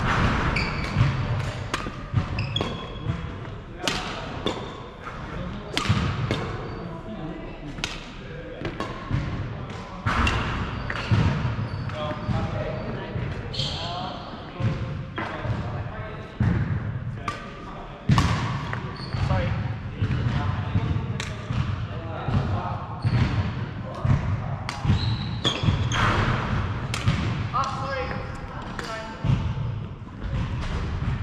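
Badminton rackets striking a shuttlecock and players' shoes on a wooden court floor, sharp hits at irregular intervals in a large hall, with voices in the background.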